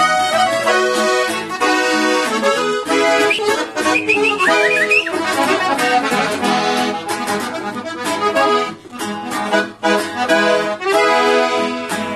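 Accordion playing a melody with quickly changing notes, the instrumental introduction of a corrido before the singing comes in.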